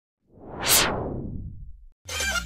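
Whoosh transition sound effect: one swell that rises to a bright peak under a second in, then fades out in a low rumbling tail.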